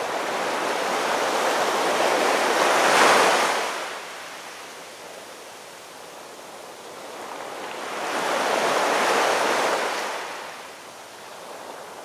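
Ocean surf: two waves swell, break and wash back, about six seconds apart. The first is the louder.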